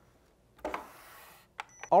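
An aluminium scooter deck set down on a digital scale: a knock and a brief rustle of handling, then a click and a short, high beep from the scale near the end.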